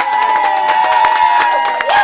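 A group clapping their hands while a voice holds one long sung note at the close of a song. Short whoops start near the end.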